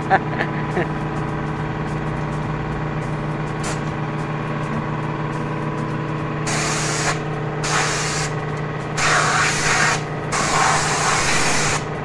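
Compressed-air blow gun hissing in about four separate blasts in the second half, blowing the cracked radiator dry before it is sealed with epoxy. A low steady hum runs underneath.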